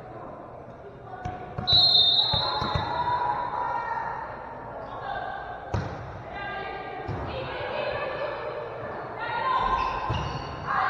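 Referee's whistle blows once, for about a second and a half, while a volleyball bounces on the hardwood gym floor a few times. A single sharp hit of the ball comes about six seconds in, among players' and spectators' voices echoing in the gym.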